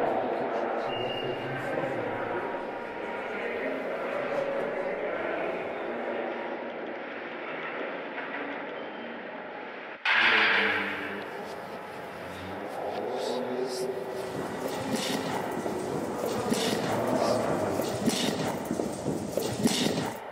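Indistinct voices over room noise. About halfway through the sound changes suddenly with a short loud burst, then a run of short clicks and knocks.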